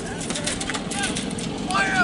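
Voices calling out across an open playing field, faint and scattered over a steady low rumble, with a louder shout near the end.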